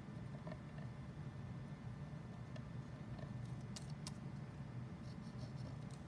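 White gel pen drawing faux stitching along the edge of a cardstock panel: faint pen-on-paper scratching with a few light ticks over a low steady hum.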